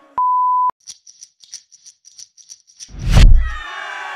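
Edited-in transition sound effects: a loud, half-second steady beep tone, then a run of faint, quick ticks at about seven a second, then a heavy deep boom with a falling sweep about three seconds in, leading into a hip-hop jingle.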